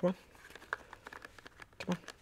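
A few faint, short clicks and scrapes of hard Kydex holster parts and their screw hardware being worked by hand. They are trying to fit together, but the hardware keeps spinning instead of tightening.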